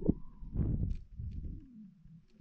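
NASA's sonification of the Kepler star KIC 7671081 B: a low, uneven rumble with a tone that slowly slides down in pitch over about two seconds.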